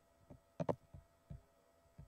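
A few soft, short knocks and clicks, irregularly spaced with a quick double knock about two-thirds of a second in, over a faint steady hum.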